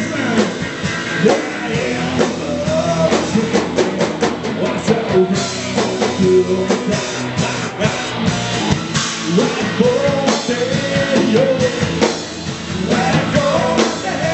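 Live rock band playing through amplifiers: electric guitars, bass guitar and drum kit, with a male voice singing phrases over it. Drum and cymbal hits come thickest in the middle, between the sung lines.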